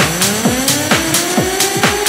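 Electronic dance music: a synth tone sweeps upward for about a second and then levels off, over a steady kick drum at about four beats a second.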